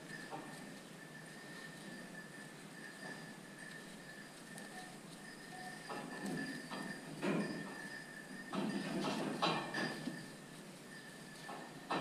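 Metal wire fastening on a sheep-pen gate being worked loose with gloved hands: soft clinking and rattling, with a few louder clatters in the second half.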